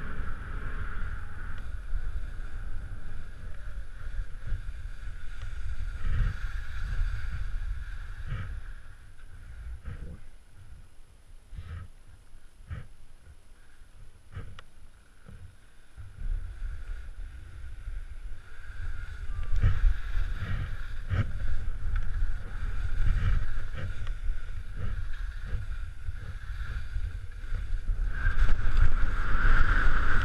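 Skis sliding and scraping over wind-crusted snow, with wind rumbling on the microphone and irregular knocks as the skis hit the crust. It eases off for several seconds in the middle, then grows rougher and louder toward the end.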